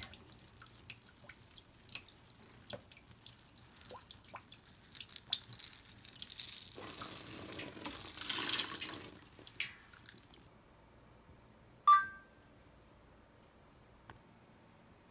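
Water splashing and dripping into a Maytag top-load washer tub as it fills. About seven seconds in there is a two-second pour of scent beads into the water. Near the end the washer's control panel gives a single short electronic beep, the loudest sound.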